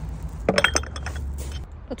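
Glass jars clinking against each other in a wooden basket: a few quick clinks about half a second in, with a short ring after them.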